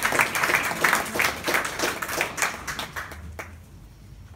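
Audience applauding, the clapping thinning out and dying away about three seconds in.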